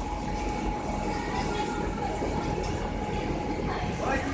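Steady machinery din of a garment factory cutting floor, with a faint steady whine through most of it.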